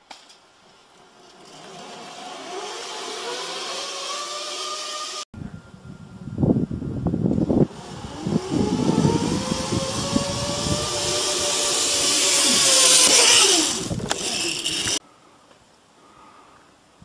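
Zipline trolley pulleys running along the steel cable with a whirring whine that rises in pitch as the rider picks up speed. It cuts off about five seconds in, then returns, climbing, holding and falling away as the trolley slows near the end. Low thumps come a second or two after the break, and a hiss grows louder as the rider nears.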